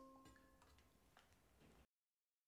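Near silence: the faint tail of the saxophone ensemble's final chord dies away in the first half second, followed by a few faint clicks, and the sound cuts off completely near the end.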